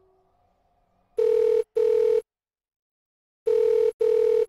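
Telephone ringing tone in a double-ring cadence: two pairs of short, steady rings, the second pair about two seconds after the first.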